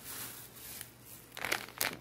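Thin plastic bags and packets crinkling as groceries are handled, in a few short rustles in the second half.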